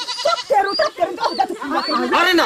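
Several women's voices crying out over one another, with short, high, wavering cries about a second in and near the end.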